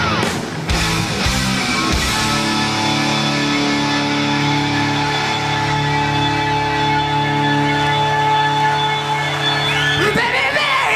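Live rock band with distorted electric guitar. After about two seconds the band settles into a long held, sustained chord that rings on steadily.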